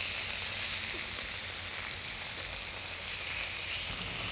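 Meat sizzling steadily on a hot flat-top griddle.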